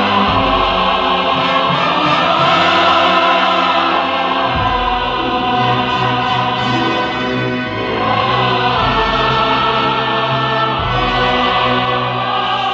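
Background music: a choir singing long held notes over a deep bass that changes note a few times.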